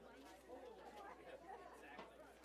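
Faint, indistinct chatter of several people talking at once, over a low steady hum.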